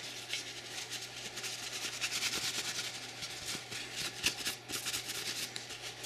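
Paper towel being rubbed and scrubbed over the metal parts of a disassembled .45 ACP pistol while cleaning off carbon: a continuous scratchy rubbing made of quick back-and-forth strokes.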